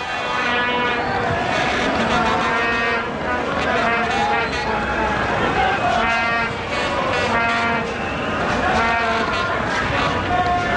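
Stadium crowd blowing vuvuzelas: several plastic horns sound at once as a steady, wavering drone over crowd noise.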